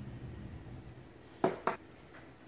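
Low room hum, then two short sharp clicks about a quarter second apart near the end, from the metal parts of a disassembled Shimano 105 ST-5500 shifter being handled.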